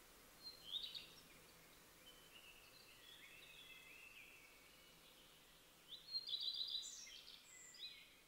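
Faint birdsong: short high chirps, a softer warbling stretch in the middle, and a louder run of quick repeated chirps near the end, over low hiss.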